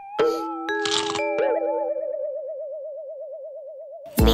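Cartoon sound effects: a boing and a couple of short swishes in the first second and a half, then a single warbling tone that wobbles up and down until the end.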